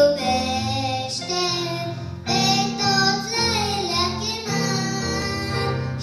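A young girl singing a Romanian children's hymn into a microphone over instrumental accompaniment with sustained low notes.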